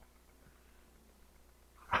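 A pause with only a faint, steady low hum of room tone; a man's voice through the microphone begins right at the end.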